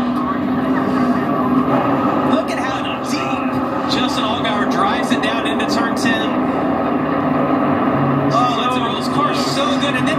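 NASCAR Xfinity Series stock car V8 engines running at racing speed, heard through a television's speaker, with indistinct voices underneath.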